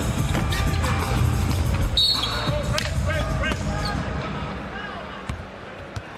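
Basketball arena game sound: crowd noise over a low rumble, with sharp ball bounces and squeaks on the hardwood court. A short referee's whistle sounds about two seconds in, and the noise then dies down as play stops.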